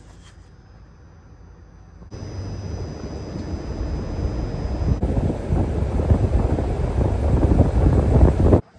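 Outdoor unit propeller fan of a Daikin VRV heat pump running, a steady rushing of air that starts about two seconds in and grows steadily louder. The unit has just been started in heating test mode.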